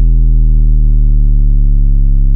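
A loud, sustained synthesized deep-bass note with a stack of overtones, held steady and sinking slightly in pitch: a hard-bass sound-check drone in a DJ competition mix.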